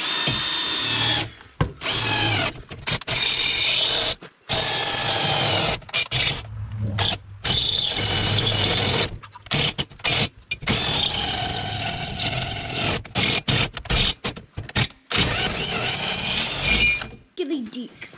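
Handheld power drill boring a hole down through a garden cart's metal frame and steering axle, the motor whining in repeated spurts that stop and start many times as the bit works through the metal.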